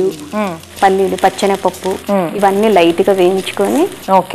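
A woman talking, with the steady hiss of food frying in a pan on the stove underneath her voice.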